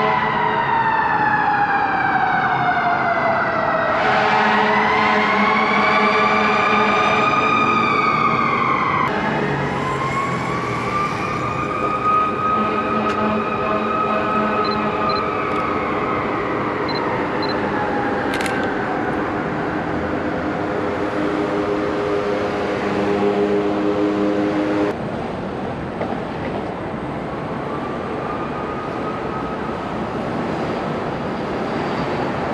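An emergency vehicle's siren wailing in slow rising and falling sweeps over street noise. The sound jumps abruptly a few times.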